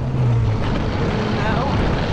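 Strong wind buffeting the camera microphone, a dense, loud low rumble. A steady low drone underneath stops about half a second in, and a faint voice is heard near the end.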